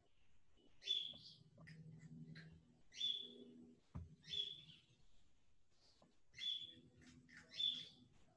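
A bird chirping faintly in the background: short calls that sweep up quickly and hold one high note, five times, one to two seconds apart. A single sharp click comes about halfway through.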